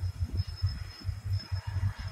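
Low, uneven rumble of noise on a phone's microphone between words, with a faint steady high-pitched tone running throughout.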